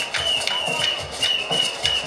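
Traditional Zimbabwean drumming for the Jerusarema dance: live hand drums with sharp percussive strikes in a loose rhythm, and a steady high-pitched tone held over them.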